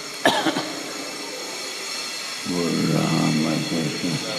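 A single cough about a quarter second in, over a steady hiss of recording noise. Near the end a voice begins a long, drawn-out call of 'jai'.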